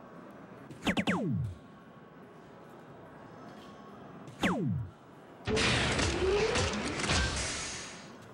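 Electronic soft-tip dartboard sound effects: a short falling electronic sweep about a second in as a dart scores a triple, a second falling sweep about four and a half seconds in, then about two seconds of a louder noisy fanfare with a rising tone, the machine's 'Low Ton' award for a round of 100 to 150 points.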